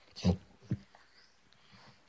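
A dog gives one short, low vocal sound about a quarter second in, followed by a briefer second sound.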